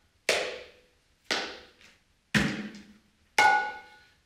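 Mridanga, the two-headed clay drum of Krishna devotional music, struck by hand in a slow te-re-ke-ta practice pattern: five strokes about a second apart, each ringing briefly and dying away, with a softer quick stroke close after the second.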